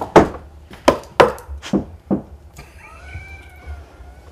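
Knocking on a wood-panelled wall, about six raps in the first two seconds in an uneven pattern, given as a call for a spirit to knock back. A faint, drawn-out, wavering tone follows near the end.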